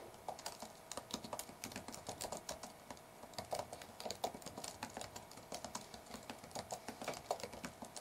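Computer keyboard being typed: a run of faint, irregular key clicks, several a second.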